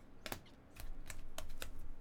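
Stiff chromium-finish Topps Finest trading cards clicking against one another as a small stack is flipped through and squared up: about six sharp, separate taps.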